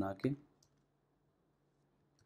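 A few words of a man's speech, then a single faint click from a computer keyboard key about half a second in, then near silence.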